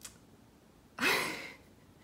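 A woman's short, breathy exhale about a second in, the start of a laugh.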